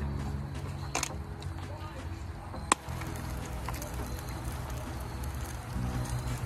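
A metal fork clinks twice against a stainless steel frying pan of stewing fish and vegetables, once about a second in and again a little before the middle, over a steady low hum.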